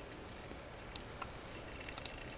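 A few faint computer mouse clicks over quiet room tone: one about a second in, a fainter one shortly after, and another near the end.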